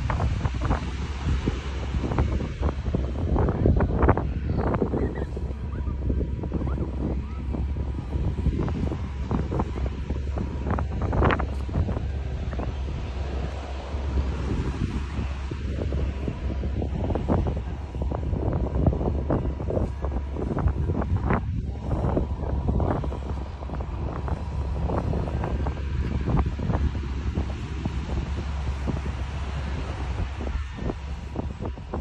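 Wind buffeting the microphone: a continuous low rumble with irregular gusty flutters.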